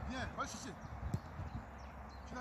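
A football being dribbled at a run: a few light knocks of the ball on the foot and running footsteps, under indistinct voices calling in the background.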